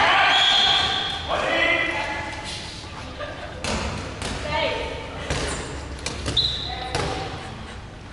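Players' voices shout and call in the first two seconds, echoing in a large sports hall. Then come several sharp thuds of dodgeballs hitting and bouncing on the wooden court floor, and a brief high squeak near the end.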